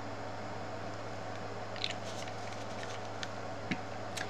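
Steady low electrical hum, with a few faint light clicks from small plastic dropper bottles being handled and set down on the table in the second half.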